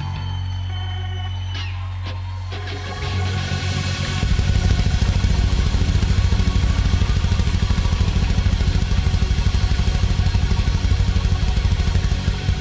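Rock band playing live. A held low bass note sounds for about three seconds, then the full band comes in much louder with a fast, heavy beat.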